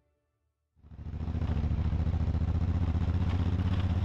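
Adventure motorcycle engine running at steady low revs, starting about a second in.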